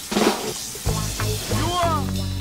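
Early-1990s hip hop track intro: a drum hit, then short bass notes, with a brief sound sliding up and down in pitch near the end.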